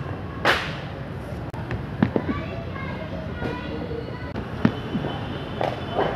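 Sharp cracks of leather cricket balls hitting bat and pitch in an indoor net hall, echoing, the loudest about half a second in and a few more around two seconds and near five seconds.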